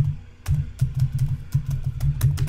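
Typing on a computer keyboard: a quick, uneven run of keystroke clicks that starts about half a second in.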